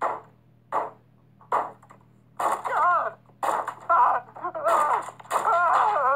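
Three short bangs on a door, about three-quarters of a second apart, then a loud, drawn-out voice rising and falling in pitch.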